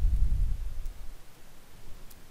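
A low rumble, loudest at the start and dying away over about a second, with a faint click partway through.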